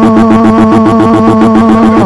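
Loud synthesizer sound effect from a cartoon soundtrack: a held, buzzing chord that pulses rapidly and evenly.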